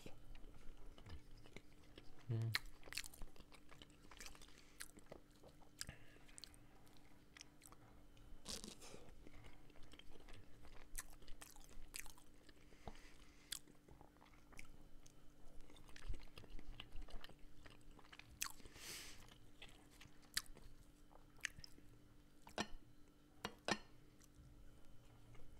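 Close-miked chewing of a plov casserole with melted cheese, with wet mouth clicks. There are occasional clicks of a wooden fork scooping food from the pan, and noisier chewing about 8 seconds in and again about 18 seconds in.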